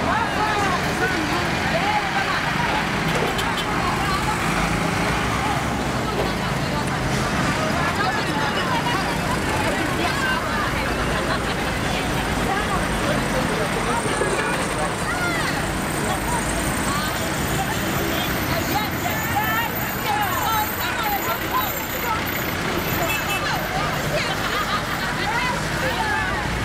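Several voices talking and laughing over one another, against a steady background rumble of road traffic.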